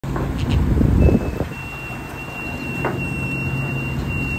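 Boat engines running steadily under way at sea, a low even drone with a thin steady high whine that comes in about a second in. A burst of wind and rushing water noise fills the first second.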